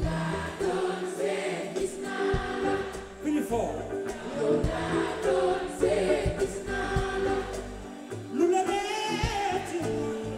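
Live band music with singing, carried by a steady bass and punctuated by sharp drum hits.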